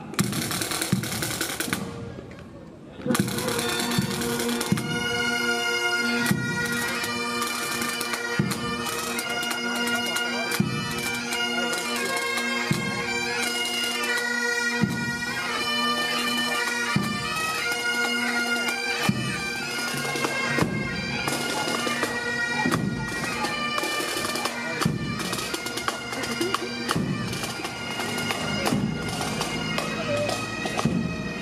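A pipe band of Great Highland bagpipes and drums playing a march. From about three seconds in the pipes sound a steady drone under the chanter melody, with regular drum beats.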